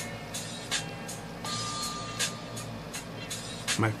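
Pencil scratching on paper in short shading strokes, over background music. A steady tone sounds for about a second near the middle.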